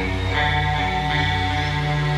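Amplified rock-band instruments holding a sustained chord, a steady drone of held notes over a low hum with no beat or rhythm; a higher layer of notes joins shortly after the start.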